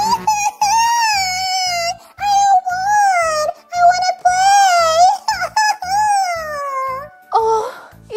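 A baby's voice wailing in long, drawn-out cries that rise and fall, over children's background music with a steady low beat.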